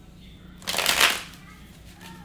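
A tarot deck shuffled by hand: one brief burst of shuffling just over half a second in, lasting well under a second.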